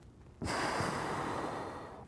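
A person's loud, long breath, about a second and a half, starting about half a second in, taken during the effort of an ab planche exercise.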